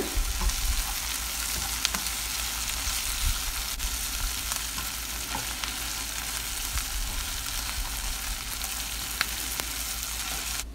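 Chopped onions, tomatoes, garlic and curry leaves sizzling steadily in hot oil in a non-stick pan, stirred with a slotted spatula that gives a few light clicks against the pan.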